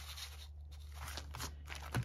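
Corrugated cardboard rustling and scraping as it is handled and fitted, with a short thump near the end as it is laid down and pressed flat against the table.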